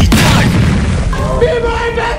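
A deep boom hits at the start and rumbles away as the hip-hop backing track drops out. About a second in, steady held musical tones come in.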